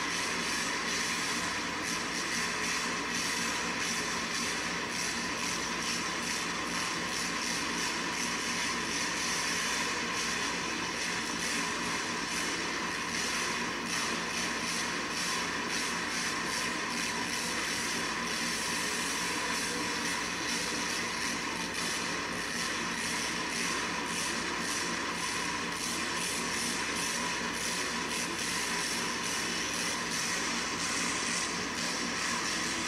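A monster truck's engine running hard through a freestyle run, heard as a steady, unbroken din.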